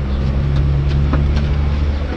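A stopped car's engine idling steadily close by, a low even hum, with one light click just after a second in.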